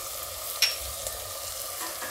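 Vegetables and fresh green pigeon peas sizzling gently in oil in a pressure cooker pan on the flame, with one sharp click about half a second in.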